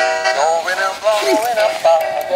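A battery-operated singing plush reindeer toy playing a song through its small speaker: an electronic singing voice over music, thin, with almost nothing in the bass.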